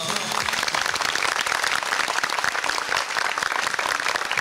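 A studio audience applauding: many hands clapping in a dense, steady patter straight after a song ends.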